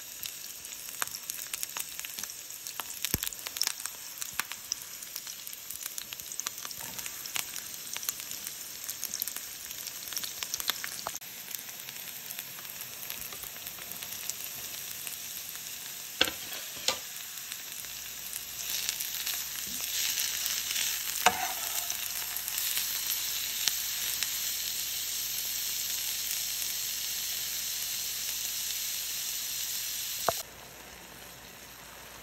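Sliced onions sizzling and crackling in hot oil in a nonstick frying pan. A little past halfway there are a few sharp knocks, and grated carrot joins the onions; from then on the sizzle is louder and steadier.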